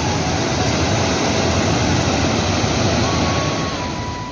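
Steady, loud rushing of a fast-flowing mountain river. A flute tune begins faintly near the end.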